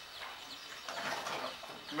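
Faint bird calls in a lull between voices.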